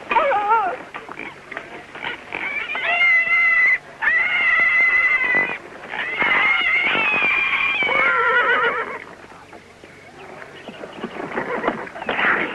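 Small white dog whining in a run of long, high, wavering cries, each a second or two long, fading out after about nine seconds.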